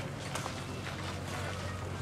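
A steady low mechanical hum under outdoor background noise, with a few faint clicks.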